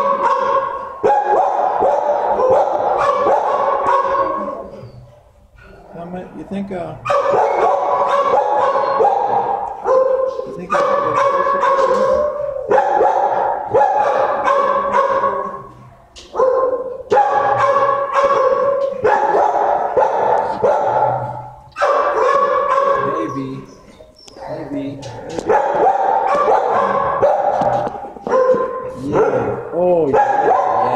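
Dogs barking in a shelter kennel, in loud bouts of a few seconds broken by brief lulls about every five seconds.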